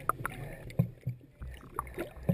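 Water sloshing and knocking as picked up by a submerged camera, with irregular dull thumps and a few sharper clicks.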